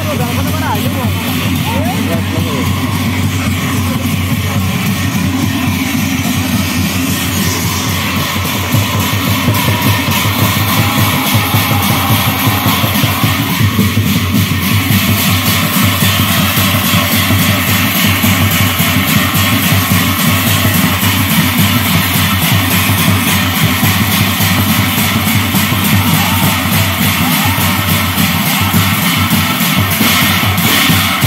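Nagara Naam ensemble playing: large brass cymbals clashing continuously over drums, with voices in the mix. The music grows louder about nine seconds in.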